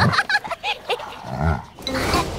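Cartoon pet creature's vocal sound effects: a string of short, excited animal noises.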